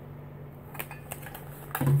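A few light clicks and taps from a metal pop-top can being handled, spaced irregularly through the second half, over a steady low hum.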